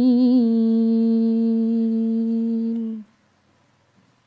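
Female reciter's melodic Quranic recitation (tilawah): a long drawn-out sung note, wavering in pitch at first, then held at a steady pitch and breaking off about three seconds in.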